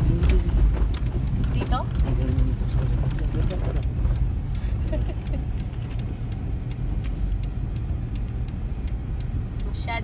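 In-cabin running noise of a first-generation Honda CR-V (RD1) driving on snowy roads: a steady low engine and road rumble, a little softer in the second half.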